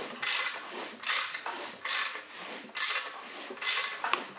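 Hand ratchet worked in short back-and-forth strokes, about two a second, turning a small-block Chevy 350 over by hand so a valve opens and closes under its roller rocker.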